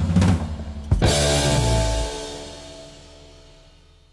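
Heavy metal band's closing hit on drums and cymbals, landing about a second in. An electric guitar chord then rings on and fades away as the song ends.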